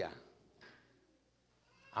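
A man's voice trailing off at the end of a word, followed by a pause of near silence of about a second before he speaks again.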